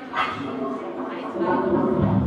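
A woman's voice making wordless vocal sounds into a microphone in an experimental voice and live-electronics performance. The pitch bends and breaks, with a sharper sound just after the start.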